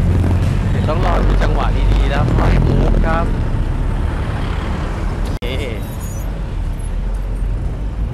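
Busy road traffic: a steady low rumble of cars, pickups and motorcycles passing close by. The sound cuts out for an instant about halfway through.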